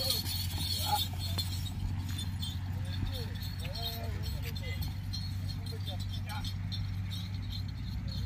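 Men's voices calling out at a distance as they run with the bulls, over a steady low hum.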